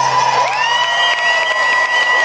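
Concert audience cheering, yelling and clapping, with one long, steady, shrill whistle, as the last acoustic guitar chord dies away at the end of the song.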